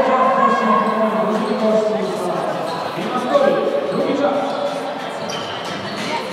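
Players' voices calling out in an echoing sports hall, with the thuds of a volleyball being struck and bouncing on the wooden floor; the sharpest thud comes about three seconds in.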